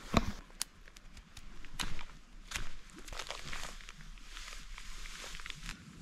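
Footsteps and rustling on a forest floor, with a few sharp cracks and knocks in the first few seconds.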